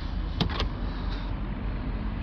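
Plastic engine cover being pulled off its mounting studs, with a sharp click about half a second in, over a steady low rumble.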